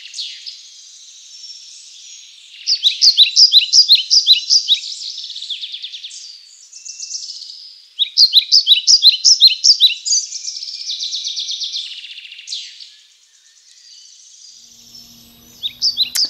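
Songbirds singing: phrases of quick, repeated high chirping notes, with warbling between them and a quieter spell near the end.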